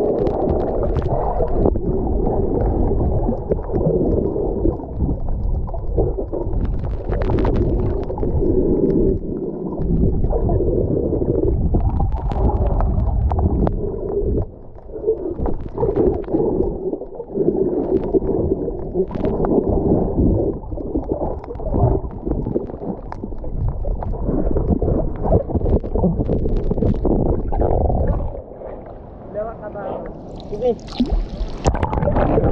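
Muffled underwater sound picked up by a GoPro in its waterproof housing while snorkeling: a dull, continuous rumble of moving water, with gurgling and bubbling.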